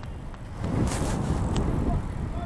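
Wind rumbling on the microphone of a moving e-bike, mixed with road and tyre noise; the rumble swells about half a second in.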